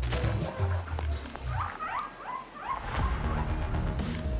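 Background music with a quick run of short, rising guinea pig squeaks in the middle.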